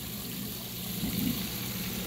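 Water from a pond spillway falling into a koi pond, a steady splashing.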